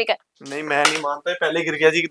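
People's voices talking, untranscribed, after a brief pause near the start, over a light clatter of garments and objects being handled.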